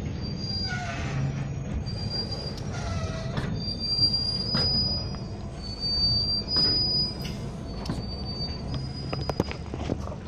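Amtrak flatcars loaded with concrete railroad ties roll past close by, their steel wheels squealing on the rail in thin high tones that come and go. The squeal rides over the steady rumble of the wheels, with scattered sharp knocks and clanks from the cars.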